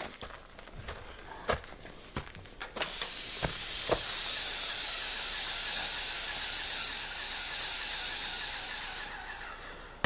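Paint spray gun spraying the siding: a steady, high hiss that starts about three seconds in and cuts off sharply about a second before the end. A few light clicks and knocks come before it.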